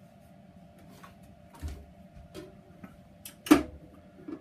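A few light clicks and knocks, then one loud clunk about three and a half seconds in as the Record Power BS250 bandsaw's upper wheel cover door is shut.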